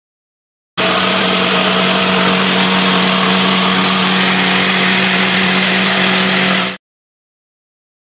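Makita jigsaw running steadily as it cuts an opening in a kitchen worktop. It starts abruptly just under a second in and stops abruptly about a second before the end.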